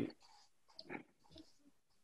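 Near silence in a pause between speech, broken by a few faint, short noises about a second in.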